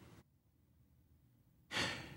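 Near silence, then a man's audible in-breath through the mouth near the end.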